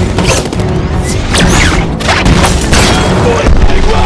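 Film battle sound mix: several explosions and crashing debris impacts over dramatic score music.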